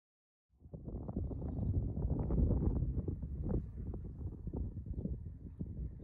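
Wind buffeting the microphone: a low, gusting rumble that starts suddenly about half a second in.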